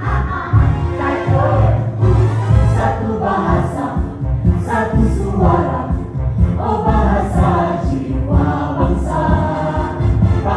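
A group of voices singing together over loud musical accompaniment with a heavy bass line, a stage musical number sung and danced by the cast.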